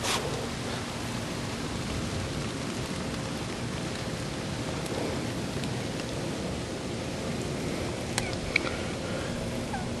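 Steady outdoor background noise, an even hiss with a faint steady hum under it and a couple of small ticks near the end.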